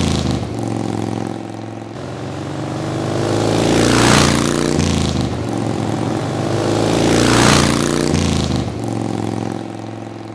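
Motorcycle engine running steadily, swelling loud three times a few seconds apart, with its pitch stepping down after each swell.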